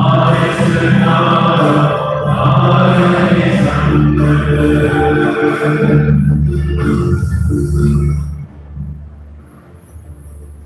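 Choir singing a hymn, with several sustained sung notes, ending about eight and a half seconds in.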